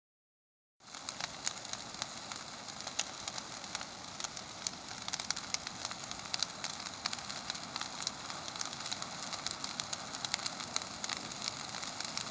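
Brush pile of green juniper bushes burning, crackling steadily with frequent sharp pops and snaps, starting about a second in.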